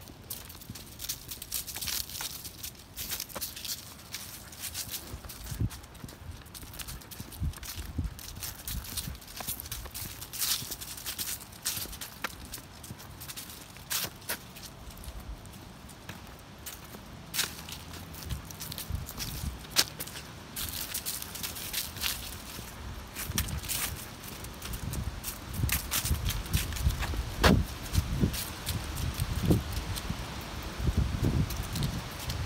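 Footsteps of a person and a dog walking a dirt trail covered in dry fallen leaves: irregular crunches and scuffs, growing louder in the last few seconds.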